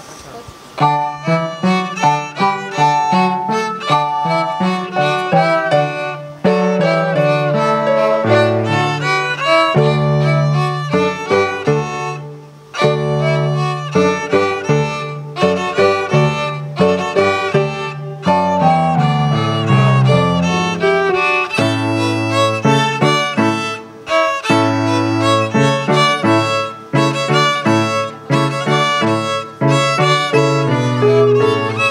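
Two violins and an electronic keyboard playing a trio piece together, the keyboard carrying a low bass line under the violin melody. The music starts suddenly about a second in.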